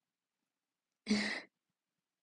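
A young woman's single short, breathy voiced exhale, about a second in, lasting under half a second.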